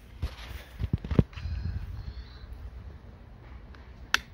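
A few light clicks and knocks in about the first second, the sharpest near its end, as a child's seatbelt harness is handled, then a low, steady outdoor background.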